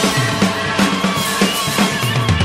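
Recorded music with a steady drum-kit beat over bass and melody.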